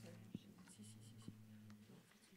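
Near silence in a small meeting room: a faint steady low hum, with soft rustling and a few light taps of paper sheets being leafed through.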